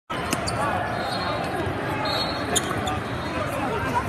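Sounds of an indoor basketball game: the ball bouncing and sneakers on the hardwood court, with a few sharp knocks, over steady voices of players and spectators.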